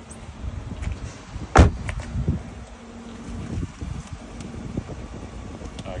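A 2015 Toyota Avalon's door shut with one loud thump about a second and a half in, followed by a couple of softer knocks, over low rumble from handling and wind.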